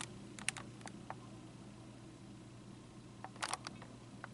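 Faint, sharp clicks over a low steady hum: a few about half a second to a second in, then a quick cluster of clicks a little before the end.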